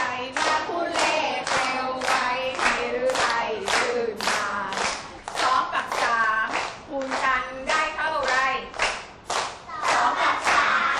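A class of children and their teacher singing a song together in Thai and clapping in time, about two to three claps a second.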